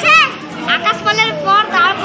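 A child speaking into a microphone in short, high-pitched phrases.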